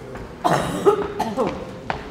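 A person close to the microphone coughs sharply about half a second in, followed by a second or so of low voices, with a single sharp click near the end.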